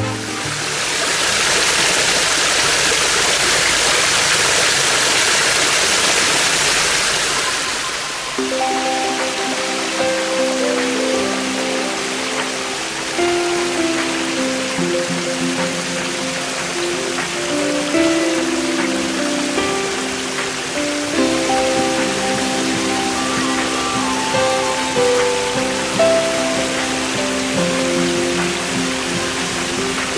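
Water from an artificial rock waterfall splashing steadily into a swimming pool; after about eight seconds background music with a melody comes in over a fainter wash of falling water.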